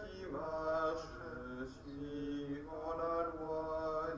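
A man's voice chanting a line of the responsorial psalm in French, held notes stepping from pitch to pitch in a plain liturgical chant.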